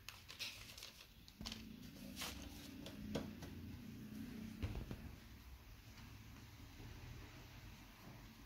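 Faint rustling of parchment paper and light taps as hands twist soft, cream-filled dough strips, with a low hum running through the middle few seconds.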